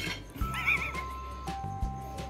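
A horse whinny sound effect: one short, quivering call about half a second in, over background music with steady sustained tones.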